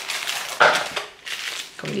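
Rummaging through plastic-packed wax melts: packaging rustling and crinkling, with a louder clatter about half a second in.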